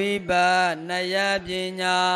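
A man's voice chanting Pali scripture in a slow, sing-song recitation. He holds long, nearly level notes in three phrases, with brief breaks between them.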